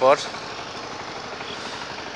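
Steady running of a two-wheel hand tractor's (power tiller's) engine, heard from across the field as an even hum.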